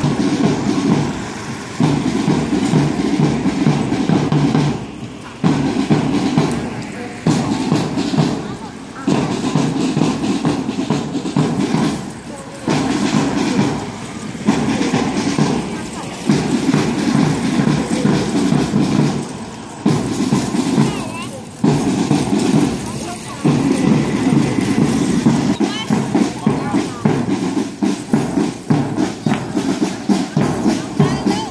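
A voice in short phrases, one to two seconds each with brief pauses between, over music.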